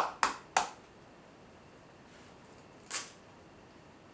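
A raw egg knocked three times in quick succession against the edge of a bowl to crack the shell, then one more short crack about three seconds in.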